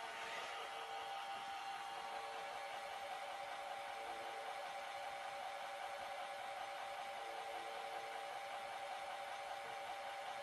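iRobot Roomba j7+ robot vacuum running, a steady whir of its suction fan and brushes with a faint even hum of tones over it.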